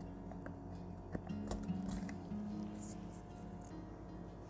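Background music playing as a held, stepped tune, with a few light clicks of wooden miniature-house wall pieces being handled and locked together about a second in.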